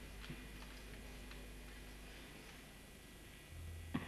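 Quiet pause on a live stage: a steady low hum from the sound system with a few faint clicks, then the hum swells a little and a sharp knock comes just before the end.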